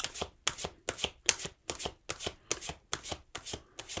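Tarot cards being shuffled by hand: a steady run of crisp card slaps, about four a second.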